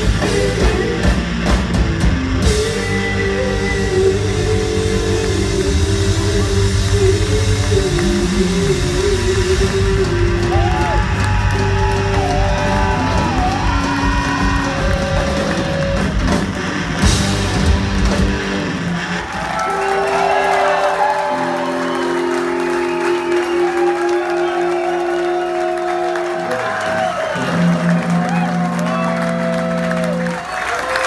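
Live rock band with electric guitars, bass and drums playing loudly. About two-thirds of the way through the drums and bass stop, and held guitar notes are left ringing as the song ends.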